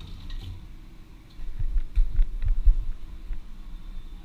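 A run of dull low thumps with faint clicks, about two a second, starting about one and a half seconds in: a person's footsteps and body movement on a tiled floor, picked up by a head-worn microphone.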